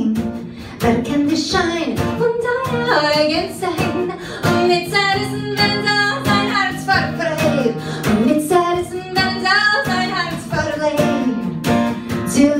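A woman singing in Yiddish over a strummed acoustic guitar.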